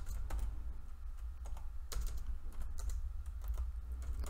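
Typing on a computer keyboard: irregular key clicks over a low steady hum.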